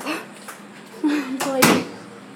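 A short vocal sound, then a single loud thump about a second and a half in.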